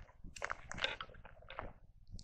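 Faint, irregular crunching and scuffing of footsteps on gravel railroad ballast.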